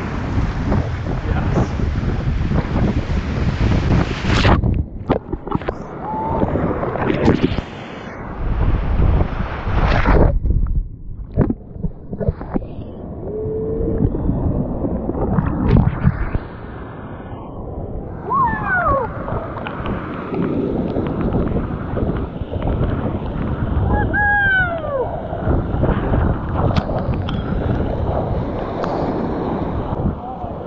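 Whitewater rapids rushing and splashing around a whitewater kayak close to the microphone, with waves crashing over the bow and wind buffeting the mic. The noise surges and drops unevenly, and a few short falling sliding tones come through in the second half.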